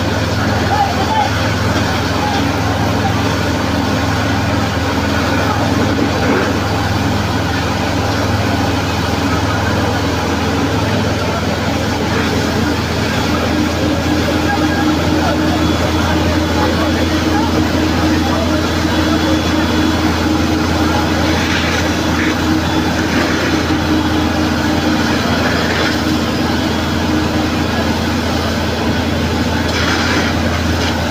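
Fire truck engine running steadily to drive its water pump while a hose sprays, a constant low drone, with the voices of a crowd of onlookers.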